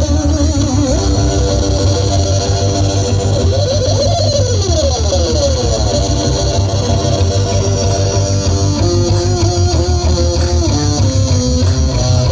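Loud live music from an amplified Magic Pipe, a homemade steel-pipe string instrument, over a heavy pulsing bass. About four seconds in, the melodic line slides down in pitch.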